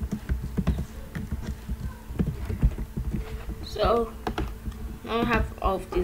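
Computer keyboard keys clicking in quick, irregular taps as someone types code, over a faint steady low hum.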